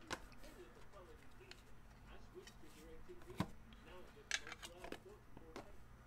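Hard-plastic card holders being handled: scattered light plastic clicks and taps, with one sharp knock a little past the middle and a quick cluster of clicks soon after.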